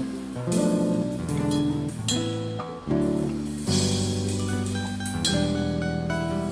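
A band playing a song's instrumental introduction, with guitar and drums, the chords changing about once a second.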